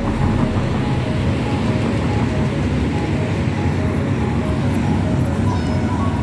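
Steady rumble of road traffic.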